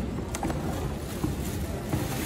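Rustling of clear plastic flower sleeves and stems as a wrapped bunch of cut flowers is handled over a cardboard box, with a few light knocks, over a steady low background rumble.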